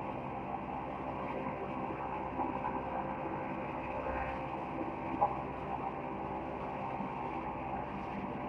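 Hinoki woodworking machine running steadily, with a brief knock about five seconds in.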